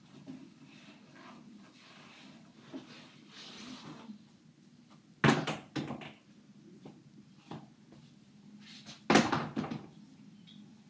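Knocks and bumps of things being handled close by, with light rustling; two loud thumps, a little past five seconds and about nine seconds in, each followed by a few smaller knocks.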